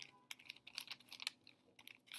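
Paintbrush strokes on a brown paper bag: faint, irregular scratching with small crinkles of the paper as the bristles spread paint.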